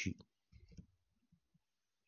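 Faint taps and clicks of a stylus on a pen tablet as characters are handwritten, mostly in a short cluster about half a second in.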